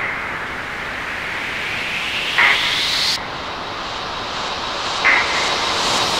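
A beatless breakdown in a drum and bass track, made of swelling noise. A rising whoosh cuts off sharply about three seconds in, and a short brighter burst comes about every two and a half seconds.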